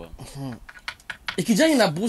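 A man talking, broken by a short pause about halfway through that is filled with a quick run of small clicks, before he resumes more loudly.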